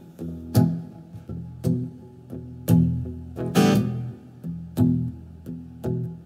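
Acoustic guitar played solo, a chord or note struck about twice a second and left to ring between strokes.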